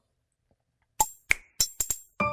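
Silence for about a second, then a quick run of five sharp clicks that come closer together: an edited-in percussive transition sound effect for a chapter title card.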